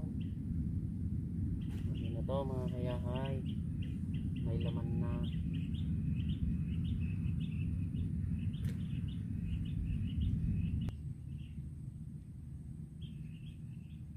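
Small birds chirping in a quick run of high repeated notes, over a steady low rumble that drops away about eleven seconds in.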